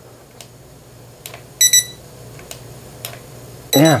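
Handheld infrared thermometer beeping: a quick double beep about a second and a half in and another single beep near the end, short and high-pitched, with a few faint clicks between. A low steady hum runs underneath.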